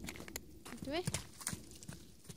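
Horse's hooves striking frozen, snow-dusted ground as it moves briskly around the handler, a run of sharp uneven knocks.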